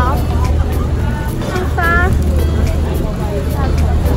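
Women talking, with background music carrying a steady beat and a continuous low rumble underneath.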